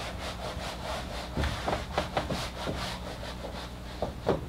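Whiteboard eraser rubbed back and forth across the board in quick repeated strokes, wiping off written equations.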